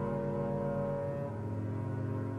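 Music: a sustained low chord held under the end credits, moving to a new low chord about a second in.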